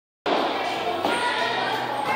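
Bowling alley din: background voices with the thuds and rumble of bowling balls. The sound drops out completely for a moment at the very start, then comes back.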